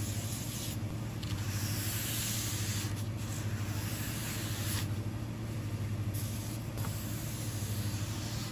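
A cloth rag wiping over sanded plastic bumper trim with panel prep degreaser: a continuous scratchy swish with brief breaks between strokes, over a steady low hum.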